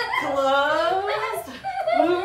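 A toddler's high-pitched wordless vocalizing: long drawn-out sounds that slide up and down in pitch, with a short break about a second and a half in.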